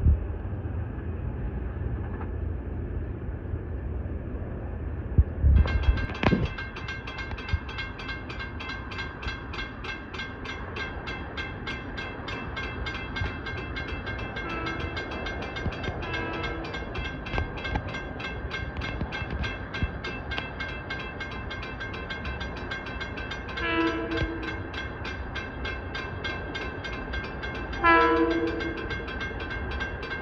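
A railroad crossing bell rings rapidly and steadily from about five seconds in. Over it, an approaching LIRR M7 electric train sounds its horn: two faint short blasts about halfway through, then two longer, louder blasts near the end.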